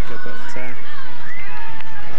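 Speech: a sports commentator's voice over the match broadcast, in drawn-out, rising and falling exclamations.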